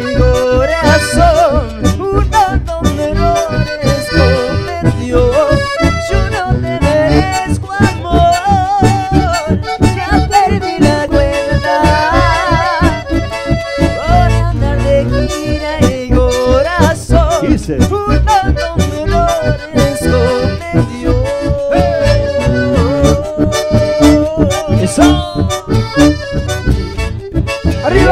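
A live band playing accordion-led dance music with a steady beat in the bass.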